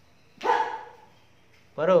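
Two short, loud shouts: a sharp one about half a second in and a second, pitched one near the end, a taekwondo kiai at the close of a poomsae form.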